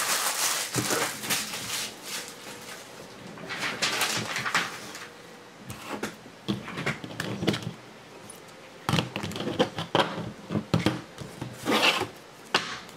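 Trading cards in rigid clear plastic holders being handled and restacked on a table: scattered rustling with light plastic clicks and taps, and a quick run of clicks near the end.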